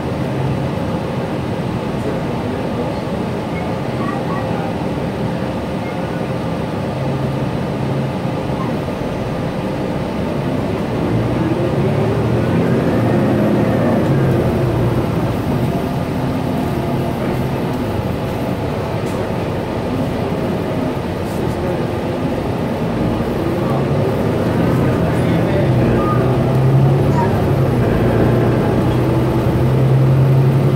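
Gillig BRT clean-diesel transit bus heard from inside the cabin while under way: steady engine and road noise. The engine note rises and grows louder about eleven seconds in and again near the end as the bus picks up speed.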